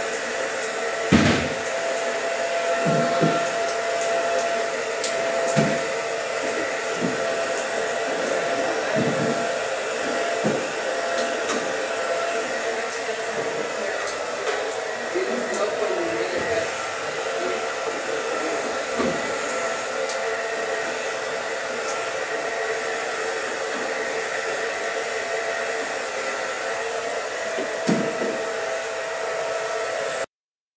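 A small electric blower motor runs steadily throughout, a constant whirring hiss with a fixed hum. A few soft knocks sound over it, the sharpest about a second in and another near the end.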